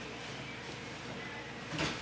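A metal fork working through soft boiled sweet potato on a ceramic plate, with one short scrape of the fork against the plate near the end.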